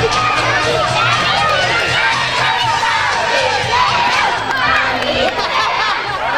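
A crowd of many children shouting and cheering together, a dense, steady din of overlapping voices.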